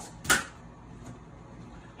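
A single sharp plastic click as the FlowBox is handled, then the faint steady noise of the running bathroom exhaust fan.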